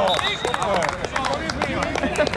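Several men's voices shouting and calling out on an outdoor football pitch just after a goal, with scattered short sharp knocks among them.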